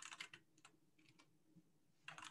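Faint computer keyboard typing: a quick run of keystrokes in the first half second or so, then only an occasional tap.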